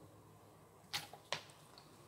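Two short, sharp clicks about a second in, less than half a second apart, against a quiet room.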